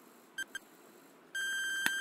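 Countdown timer sound effect beeping: two short beeps about half a second in, then a longer steady beep near the end as the timer reaches zero.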